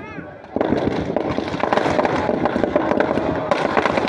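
Firecrackers inside a burning Ravana effigy going off in a rapid, dense crackle that starts about half a second in and keeps on.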